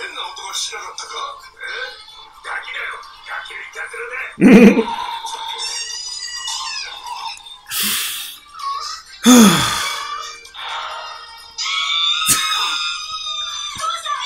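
Anime soundtrack: Japanese dialogue over background music, with a loud shout about four and a half seconds in. A man laughs loudly about nine seconds in.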